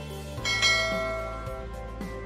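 A bell-like chime rings out about half a second in and slowly fades, over soft background music.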